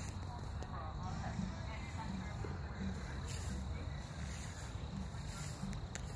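Low, steady rumbling handling noise from a phone being moved about, with faint indistinct voices in the background.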